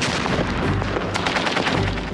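Battle sound of rapid, continuous machine-gun and rifle fire, shots crowding one on another, over a low steady rumble.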